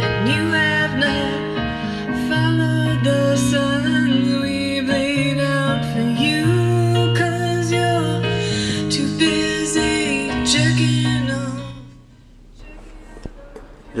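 A song played over the Harman Kardon sound system of a 2015 Jeep Grand Cherokee Summit, heard inside the cabin, with strong bass notes under a melody. The music stops about twelve seconds in.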